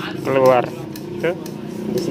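Mostly a man's voice, two short utterances, over a steady low drone.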